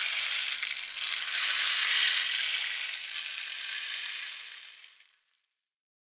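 A carved wooden rain stick tipped on end, its fill trickling down inside in a steady, even patter like falling rain. The patter thins and dies away about five seconds in as the fill runs out.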